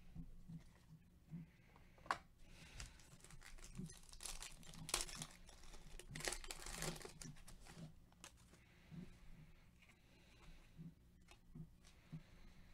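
Faint crinkling and tearing of a foil Panini Revolution basketball card pack being opened by hand, in several short rustles, the loudest about five and seven seconds in.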